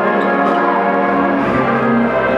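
Live jazz big band playing, its saxophones, trumpets and trombones holding full sustained chords.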